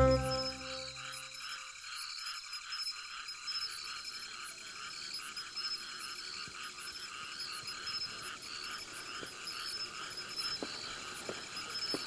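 Frogs calling at night in a steady, even rhythm of a few calls a second, with fainter high-pitched chirps repeating above them. A music cue fades out in the first second or two.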